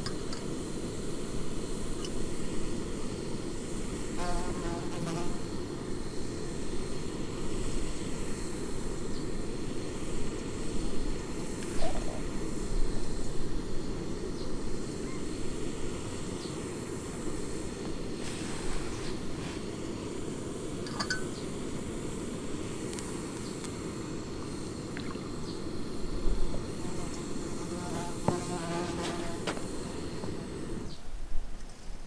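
Small backpacking canister gas stove burning at full flame under a pot of water being heated: a steady low rushing hiss.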